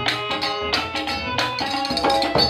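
Sylheti Baul folk music played on violin and hand drum, the drum strokes keeping a steady beat about every two-thirds of a second under sustained violin notes.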